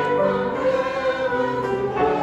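A congregation singing a hymn together, accompanied on an upright piano, with held notes that move from one to the next.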